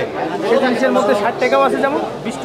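Several people talking over one another, as lively chatter.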